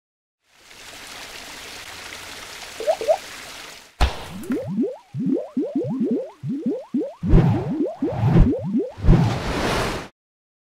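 Logo-animation sound effects: a hissing whoosh that swells for about three seconds, then a sharp hit and a quick run of short rising bloops with a few deep thuds, cutting off suddenly at the end.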